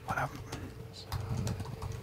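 Faint typing on a computer keyboard, a few scattered light key clicks mostly in the second half, over a low murmur of a man's voice.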